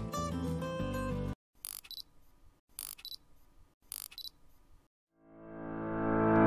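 Background music stops about a second in. Three camera shutter clicks follow, about a second apart, each a quick double click. Music then fades back in near the end.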